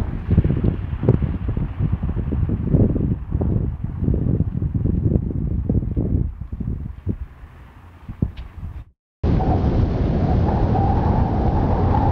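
Gusty wind buffeting the microphone in uneven low rumbles that die away over several seconds. After a short silent break, a steady, even rumbling noise.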